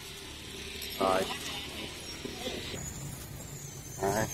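Brief snatches of a voice over a steady high hiss that cuts off about three quarters of the way through, with a low background rumble.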